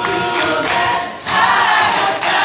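A mixed group of voices singing a gospel song together in chorus, with rhythmic hand claps or jingles keeping the beat.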